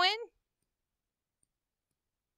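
The tail of a spoken word, then near silence.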